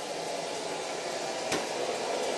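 Robot vacuum cleaner running with a steady whirring hum, and a single sharp click about a second and a half in.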